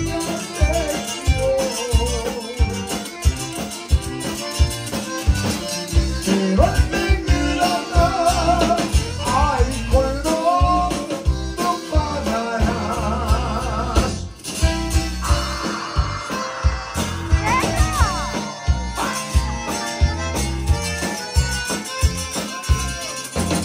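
Live conjunto band playing: accordion carrying the melody over electric bass and guitar, with a steady beat.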